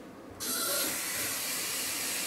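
Bathroom tap turned on, water running steadily into the sink with a hiss that starts abruptly about half a second in.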